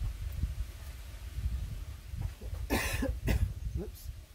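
A woman's short exclamation, 'oops', with a cough-like burst of breath, about three quarters of the way in, over a steady low rumble.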